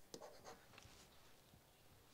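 Faint scratching and light taps of a stylus writing on a tablet, mostly in the first half-second, otherwise near silence.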